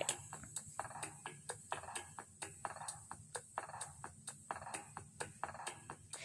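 Faint, quick clicking, about three or four clicks a second, over quiet supermarket background noise.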